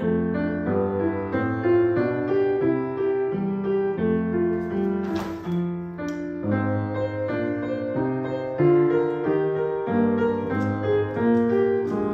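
Upright piano playing a solo interlude of an art song, a flowing run of notes over low chords. A brief hiss sounds about halfway through.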